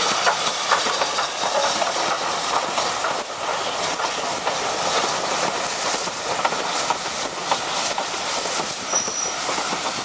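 Steam-hauled train on the move close by, its wheels clattering over the rail joints against a steady hiss. A brief high squeal comes near the end.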